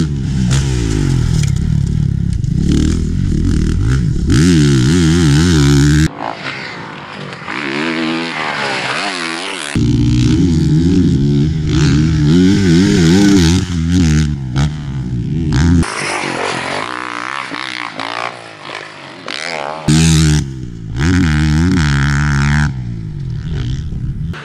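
2018 Honda CRF450R's single-cylinder four-stroke engine revving hard and falling off over and over as the bike is ridden on a motocross track. The sound changes abruptly several times, with thinner, quieter stretches where the bike is farther off.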